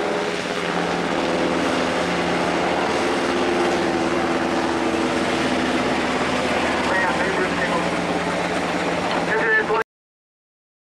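Helicopter rotor and engine noise, a steady loud rush with a constant hum underneath, cutting off abruptly just before the end.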